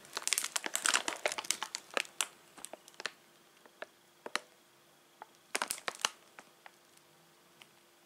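Plastic bag of frozen cauliflower crinkling as it is handled and turned: a dense run of crackles for the first three seconds, then scattered crackles with a short burst about five and a half seconds in.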